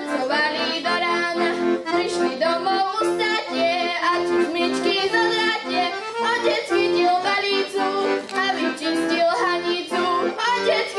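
A girl singing a Slovak folk song to piano accordion accompaniment. The accordion keeps a steady rhythm of alternating bass notes and chords under her voice.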